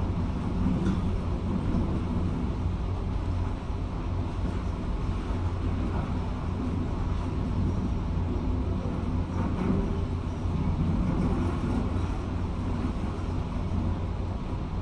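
Steady low rumble of a demolition excavator at work, muffled through window glass, with a few faint knocks as its crusher jaws bite into the viaduct's concrete.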